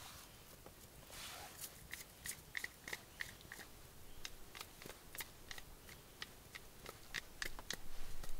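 Small wood campfire crackling, with many irregular sharp pops and ticks.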